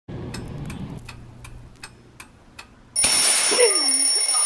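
A clock ticking steadily, about three ticks a second. About three seconds in, it is cut off by a sudden loud spray hiss from an aerosol can of Silly String, and a short low voice sound comes just before the end.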